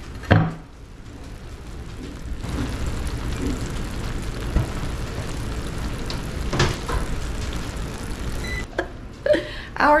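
Freshly baked egg-and-cheese casserole sizzling and bubbling in its hot baking dish: a steady, even hiss that sets in about two seconds in, with a short knock around the middle.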